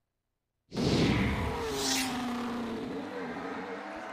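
Whooshing sound effect of an animated winner-reveal graphic. It comes in suddenly about a second in, with a low rumble and a held low tone, sweeps high once near the middle and slowly fades.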